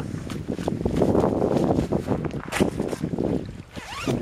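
Wind buffeting the camera microphone: a low, uneven rumble that rises and falls in gusts.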